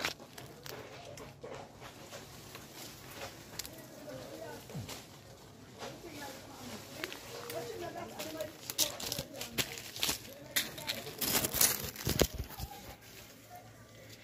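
Leaves and twigs in an ackee tree rustling and crackling as pods are picked among the branches, with a louder cluster of crackles about eleven to twelve seconds in. A faint voice murmurs underneath.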